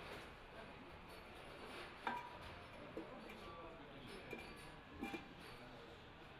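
Faint clinks and knocks from the inlet filter housing of a rotary claw compressor being handled and fitted back over its filter element: a sharper clink with a brief ring about two seconds in, then a few lighter knocks.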